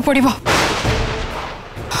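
A sudden booming hit, a dramatic sound effect of the kind laid over reaction shots in TV serials, about half a second in. Its noisy tail fades out over about a second and a half.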